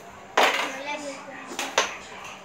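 Carrom striker flicked across the board and clacking against the carrom coins: one sharp clack about a third of a second in, then two quick clacks close together near the end.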